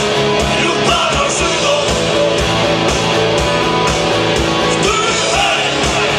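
Live rock band playing through a PA: electric guitars and bass over a steady kick-drum beat, with a sung vocal line about a second in and again near the end.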